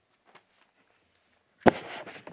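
A single sharp knock near the end, much louder than the surrounding talk, followed by brief rustling and a few small clicks.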